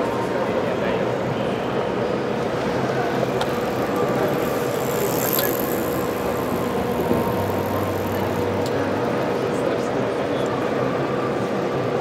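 Steady background chatter of many voices blending together, with a faint steady hum underneath.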